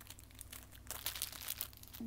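Plastic packaging crinkling in quick, irregular crackles as sealed foil trading-card packets are picked up off a plastic-bagged magazine.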